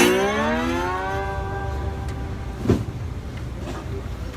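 Metal-bodied resonator guitar played with a slide: the strings are struck, and the slide glides the ringing note smoothly upward before it fades. A second, softer note is picked near the end.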